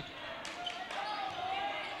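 A basketball dribbled on a hardwood gym floor, with a crowd and players' voices murmuring in the background.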